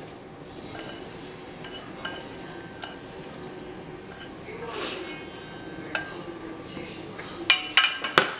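Metal tongs scraping and clinking against a stainless steel pan as bacon bits are lifted out, with a few light clicks and sharper metal clanks near the end.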